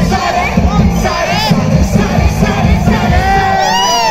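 Live concert sound: loud amplified rap music with a heavy bass beat, over a large crowd cheering and shouting along. A pitched sweep rises and falls near the end.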